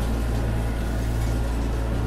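Massey Ferguson 6480 tractor running at low engine revs while hedge cutting, a steady low drone heard from inside the cab.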